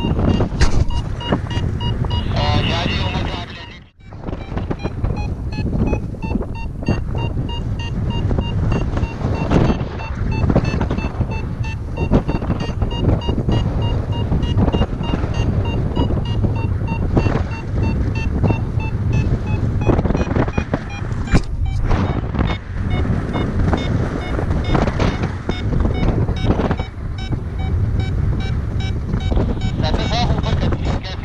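Wind rushing over the camera microphone in flight, with a paraglider variometer's rapid beeping climb tone running over it; the steady beeps are the sign of the glider climbing in lift. The sound briefly drops out about four seconds in.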